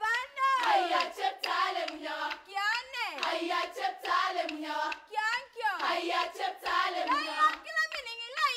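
Girls' choir singing a Marakwet folk song to steady rhythmic hand clapping, about three claps a second. High voices slide down in long falling sweeps a few times.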